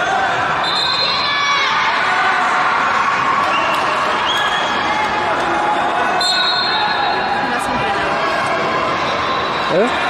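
Echoing crowd chatter and voices in a large sports hall at a wrestling tournament, with a few short high squeaks about a second in and again around six seconds.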